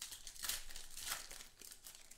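Foil wrapper of a football trading-card pack being torn open and crinkled by hand, in a few quick bursts as the cards are pulled out.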